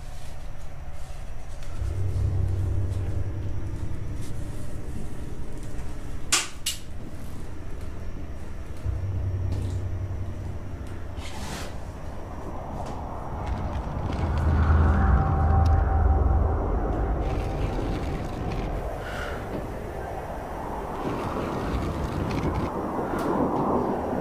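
Horror film sound design: a low rumbling drone that swells and fades several times, with a few sharp knocks about six and eleven seconds in and a rising hiss that peaks past the middle.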